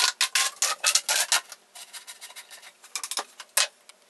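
Corrugated plastic exhaust hose being pulled off its window fitting: a quick run of crackling clicks and scrapes for about the first second and a half, then scattered handling clicks with one sharper click near the end.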